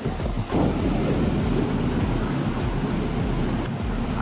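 Mountain stream rushing over rocks and boulders, a steady wash of running water.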